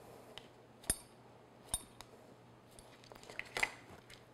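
A chef's knife cutting down through a brownie onto a plastic cutting board, giving a few sharp taps with a short metallic ring, the two clearest about a second apart. Near the end there is a small clatter.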